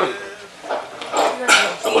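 A man speaking into a handheld microphone in short, emphatic phrases, heard through the hall's speakers.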